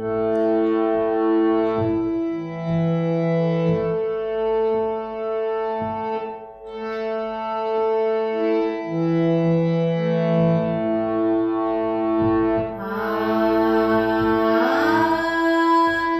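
Harmonium playing held notes that move in steps through a Sa–Pa–Sa alankaar over a steady drone. Near the end a woman's voice joins, singing on an open "aa" (akar) with gliding pitch.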